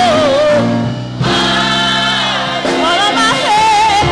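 Gospel choir and lead voice singing over live band accompaniment, with held chords underneath; the singing breaks off briefly about a second in.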